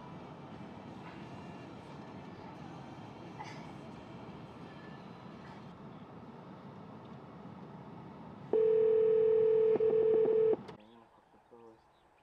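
Steady noise inside a slowly moving car, then the car's horn sounding loudly for about two seconds with a brief break, about eight and a half seconds in.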